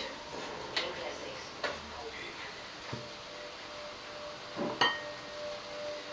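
A few light clinks and knocks, about four spaced a second or so apart, of a plate and cooking pot as chunks of raw beef are tipped into the pot.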